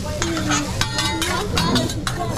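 Metal spatula scraping and clicking against a hot teppanyaki griddle in a quick, irregular run while fried rice sizzles on it.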